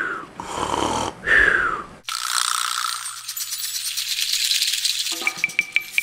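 A person's voice imitating cartoon snoring: a rough snore followed by a falling whistle, twice. About two seconds in, it cuts abruptly to music with a shaker-like rattle, and quick high plinking notes join near the end.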